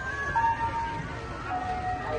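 Music: a slow melody of long held notes, stepping down in pitch.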